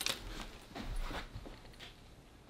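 Faint rustling with a few light clicks, dying away.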